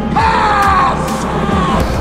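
A man's deep voice bellowing one long, drawn-out shout that falls slightly in pitch, over film-score music.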